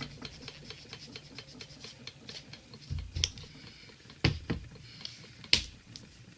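A dry pad being rubbed over cured gel nails, heard as a run of small light clicks, with three sharper taps in the second half.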